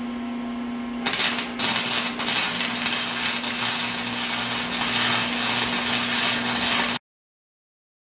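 Electric arc welding on a steel tube frame: the arc crackles steadily, starting about a second in over a steady hum, and stops abruptly about seven seconds in.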